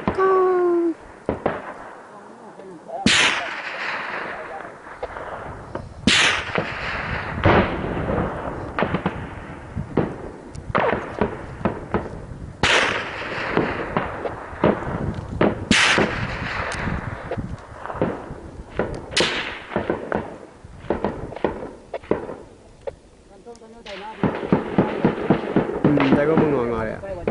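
Gunfire in a firefight: scattered shots and short bursts at irregular intervals, with about six louder blasts, each trailing a long echo.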